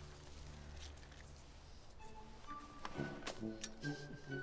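Film score: a low, quiet drone that gives way about halfway to soft sustained orchestral string notes. A few sharp clicks come near the end.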